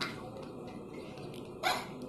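A young girl's short burst of laughter near the end, over quiet room noise.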